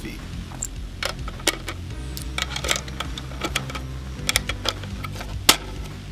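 Sharp, irregular metallic clicks from handling a rifle magazine and loading 5.56 cartridges into it, the loudest click about five and a half seconds in, over background music.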